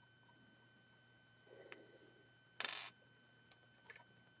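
Mostly quiet room tone, broken by one short hissing rustle a little past halfway through and a faint click near the end.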